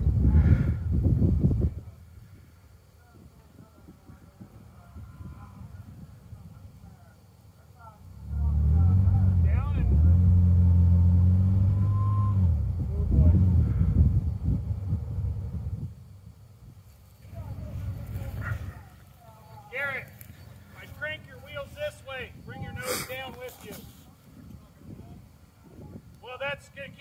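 Ford Explorer Sport Trac's V6 engine running hard under load for about eight seconds, from about eight seconds in, as the truck strains stuck in soft sand on a steep slope. Voices talk near the end.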